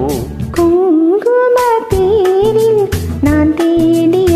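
Karaoke performance of a Tamil film duet: a voice sings a held, wavering melodic line over a backing track with a steady drum beat.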